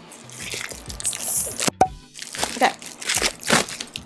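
Plastic mailer bag crinkling and rustling in the hands as it is pulled open, with a few sharp crackles.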